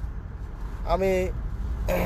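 Steady low road and tyre rumble heard inside a car's cabin as the car coasts along in neutral. A man speaks one short word about a second in.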